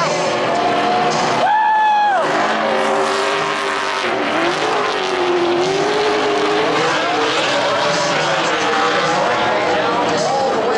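NASCAR stock cars racing past on a short oval, several V8 engines at high revs overlapping, their pitch rising and falling as they pass, with one car's pitch dropping sharply about two seconds in.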